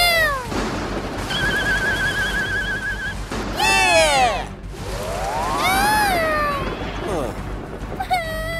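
High-pitched, whiny cries that rise and fall in pitch, three of them, with a warbling whistle-like tone between the first two: comic crying and cartoon sound effects.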